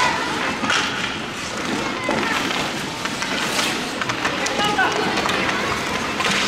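Ice hockey game in play: skate blades scraping the ice and sticks striking the puck and each other in a steady stream of short scrapes and clacks, mixed with indistinct shouts from players and onlookers.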